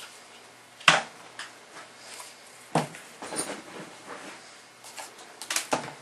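Sheathed knives being set down on a wooden coffee table and handled: a sharp knock about a second in, another near three seconds, and a quick run of knocks near the end, with lighter handling clatter between.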